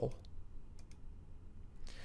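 A few faint, sharp computer clicks over a low steady hum, as the lecture slide is advanced to its next caption.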